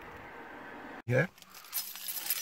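Steady low background noise that cuts off abruptly about a second in, followed near the end by light, high-pitched metallic jingling and clinking of small metal pieces.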